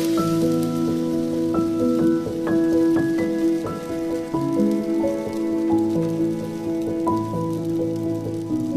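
Soft instrumental background music of held notes, over a steady hiss of a thin blin (Russian crêpe) sizzling in an oiled frying pan.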